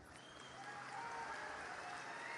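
Faint applause from a large audience, rising a little over the first second and then holding steady.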